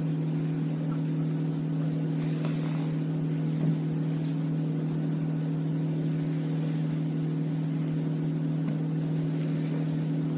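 A steady low hum from a motor or appliance, with faint soft rustling of hands dredging chicken in flour in a steel bowl.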